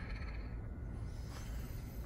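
Quiet, steady low background rumble with no distinct sounds in it.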